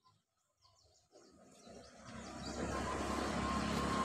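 A vehicle driving, its engine and road noise rising from about a second in and then holding steady, with a steady high whine joining after about two and a half seconds. Faint bird chirps can be heard in the first second before the vehicle noise builds.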